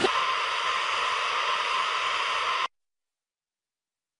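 Steady TV static hiss that cuts off suddenly after about two and a half seconds.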